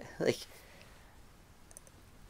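A man's voice says one word, then a quiet pause of room tone with a few faint, brief clicks near the end.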